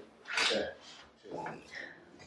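Speech: a short spoken "okay" about half a second in, followed by fainter, broken voice sounds.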